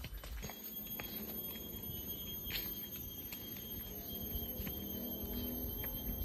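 Cicada's steady, high-pitched whine in tropical forest, starting about half a second in and stopping shortly before the end, with a few faint clicks.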